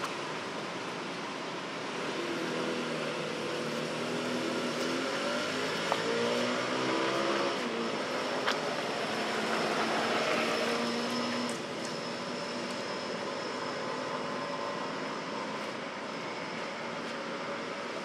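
A motorbike engine passing by, its note rising and falling for several seconds before dropping away about eleven seconds in, over a steady background hiss.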